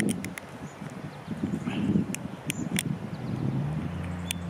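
Sharp clicks and light ticks of the screw cap being twisted off a small amber flask-style bottle, in bursts at the start and again about two seconds in, over a soft rustle. A steady low hum comes in near the end.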